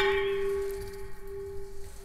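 A single struck chime ringing one steady, bell-like tone that slowly fades away.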